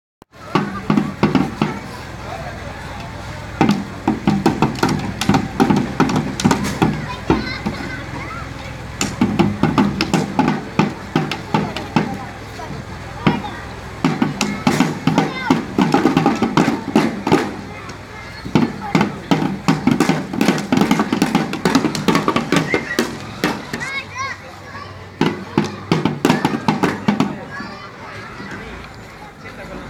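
Children beating small rope-laced, double-headed drums with sticks: runs of quick, uneven strokes in clusters with short pauses between them, mixed with children's voices.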